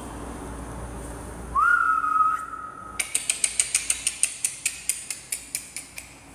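A single whistled note that rises and then holds for about a second, followed by a rapid run of about twenty sharp clicks, roughly seven a second, fading toward the end.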